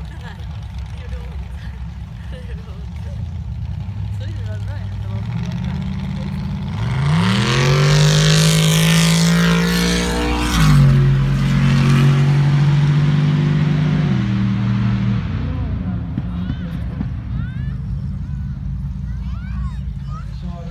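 Car engine running hard at high revs: the pitch climbs about seven seconds in and holds, drops sharply about ten seconds in as the sound peaks, then holds lower in steps before fading.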